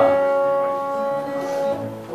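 Acoustic guitar chord ringing and slowly fading.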